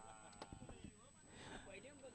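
Near silence, with faint, wavering calls in the background.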